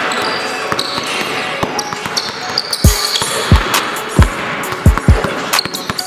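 A basketball is dribbled hard on a hardwood gym floor, with short sneaker squeaks. About halfway in, a hip-hop beat comes in with deep bass hits that drop in pitch.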